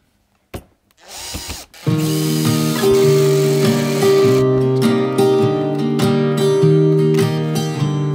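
A cordless drill/driver runs in short bursts, driving screws into OSB board, starting about a second in. From about two seconds on, acoustic guitar music starts and is the loudest sound, with the drill's whir still under it for a couple of seconds.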